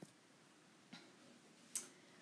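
Near silence with a few faint, isolated clicks: one at the start, one about a second in, and a brief hissy click near the end.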